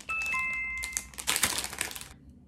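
Plastic candy bag crinkling as it is handled and opened, with a bright two-note electronic chime sounding near the start.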